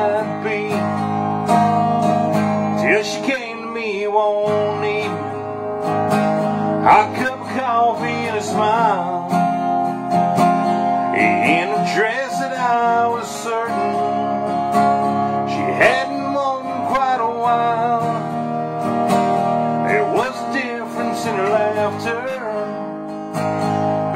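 A cutaway acoustic guitar being strummed and picked steadily in a country-style instrumental passage between sung lines.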